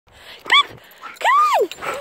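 Standard poodle vocalising: a short high yip about half a second in, then a longer whine that rises and falls in pitch.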